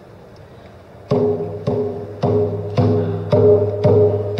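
Rawhide hand drum struck with a beater, starting about a second in and keeping a steady beat of about two strokes a second, each stroke ringing on briefly: the opening beat of a song.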